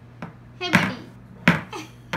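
Two sharp thumps about three-quarters of a second apart, part of a steady run of knocks like something being banged or bounced on a hard surface.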